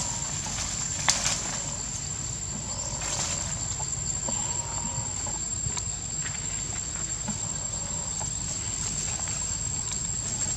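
Forest ambience: a steady high-pitched insect drone throughout, with scattered clicks and rustling of branches as macaques move through the trees, and one sharp snap about a second in.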